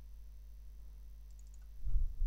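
A few faint computer mouse clicks about a second and a half in, over a steady low hum, with a low thump near the end.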